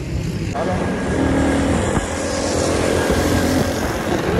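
Motor vehicle running with a steady road and wind rumble, and a steady pitched drone for about two seconds in the middle.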